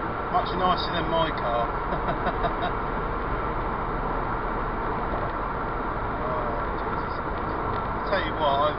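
Steady road and engine noise heard inside a Ford Fiesta Mk6 cruising at motorway speed, with a faint voice in the first few seconds and again shortly before the end.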